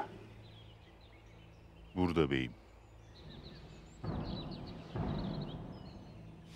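Woodland birds chirping faintly throughout, with a short voice sounding briefly about two seconds in, then a burst of rustling in the undergrowth from about four seconds.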